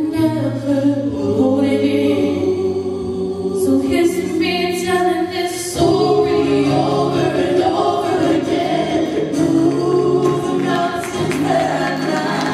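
A men's vocal group singing a gospel song together in harmony through microphones, with long held notes.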